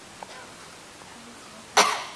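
Quiet room tone, then one short cough near the end.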